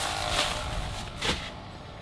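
Plastic shopping bag rustling as it is handled, with two brief crinkles, over a steady low rumble of parking-lot traffic.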